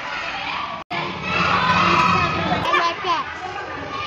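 A room full of young children chattering and calling out over one another, with high voices rising and falling. The sound drops out briefly just under a second in.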